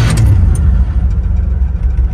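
A 1980 Chevy pickup's engine idling with a steady low rumble, heard from inside the cab.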